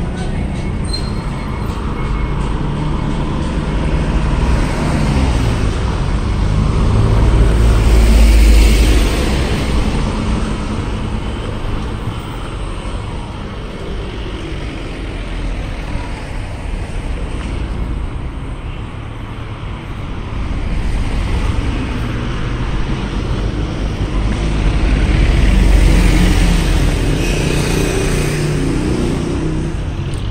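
Street traffic: cars and vans driving past on a sloping city street, a steady rumble of engines and tyres that swells loudest as a vehicle goes by close at hand about eight seconds in and again near the end.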